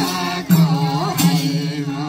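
Sorathi folk song: voices singing together in a held, chant-like melody, accompanied by madal hand drums, with sharp drum strokes about half a second in and again just after a second.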